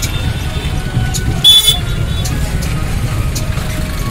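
Busy street noise: a steady low rumble with faint scattered clicks. About a second and a half in comes a short, loud, high-pitched toot.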